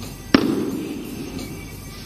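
A single loud smack about a third of a second in, with a short ringing tail, as a plastic bat strikes down at a tablet lying on the floor, over background music.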